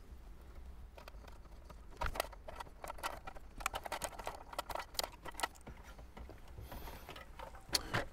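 Light plastic clicks and rattles from wiring-harness connectors being worked free from the back of a Toyota 4Runner factory head unit, with a small flathead screwdriver pressing their release tabs. The clicks are irregular and begin about two seconds in.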